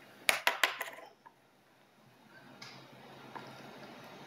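A quick run of four sharp clicks about a second in, from keys on a laptop being pressed.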